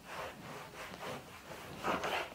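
Whiteboard eraser rubbing back and forth across a whiteboard: a run of quick wiping strokes, about three a second, the loudest near the end.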